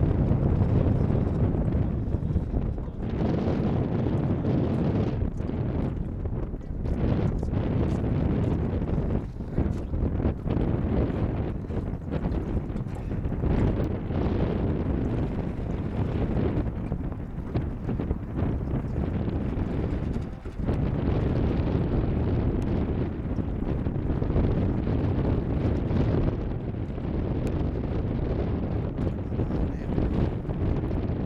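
Wind buffeting the microphone: a steady low rumble that swells and dips with the gusts.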